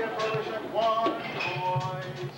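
A live rock band playing in a club, with pitched sung or lead lines over the band and people's voices mixed in.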